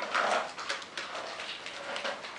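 Rawhide head of a taiko drum being worked at its rim with a hand tool: a short squeaking rub of tool on leather just after the start, then a few light taps.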